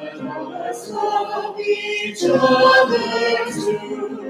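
Small mixed church choir of men and women singing. A phrase closes about two seconds in, and a louder phrase follows.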